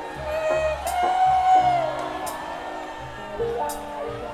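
A live rock band (electric guitar, bass and drums) plays the song with held chords over a bass line, marked by a drum hit about every second and a half.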